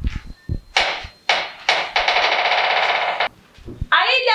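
Electric doorbell buzzer sounding: two short rings, then one steady ring of about a second and a half.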